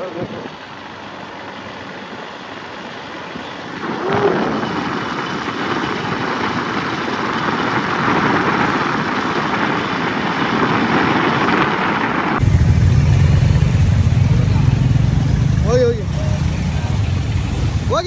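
Wind and road noise from riding a motorcycle, swelling about four seconds in. About twelve seconds in it cuts abruptly to the low rumble of a group of motorcycles running, with brief voices near the end.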